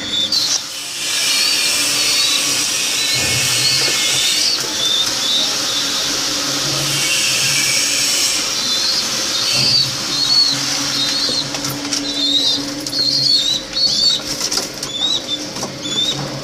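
Domestic pigeons flapping their wings, in two long flurries: one about a second in, another around seven seconds. Short high chirps repeat throughout.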